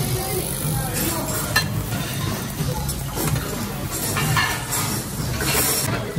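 Strips of raw meat sizzling on a hot tabletop barbecue grill, with several sharp clinks of metal tongs against the grill and dishes, over low restaurant chatter.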